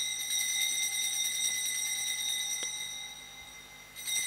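Altar bells ringing with a steady, high-pitched ring at the elevation of the chalice during the consecration at Mass, fading away over the last second.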